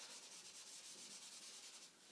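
Marker drawing on a whiteboard: a faint, steady dry rubbing with a fine, rapid scratchy texture, stopping just before the end.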